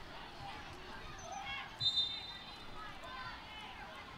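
Indistinct voices of players and spectators in a large indoor arena, faint under the broadcast. About two seconds in there is a short, high whistle.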